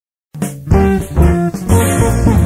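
Band music starting abruptly out of silence about a third of a second in: a small group led by guitar, with a strong bass line.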